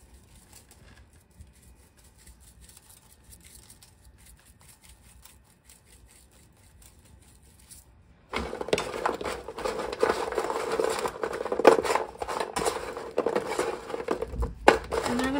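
Bread cubes being tossed by hand in a metal baking pan, rustling and clattering against the metal. It starts suddenly about eight seconds in, after several quiet seconds.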